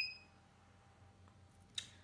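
A high steady electronic beep dies away at the very start, then low room tone with one brief crisp rustle of paper sheets near the end, as the flaps of a paper model are handled.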